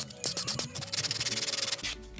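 A hand nail file rasping across an acrylic nail tip in quick, rapid strokes. It starts just after the beginning and stops shortly before the end. Background music plays underneath.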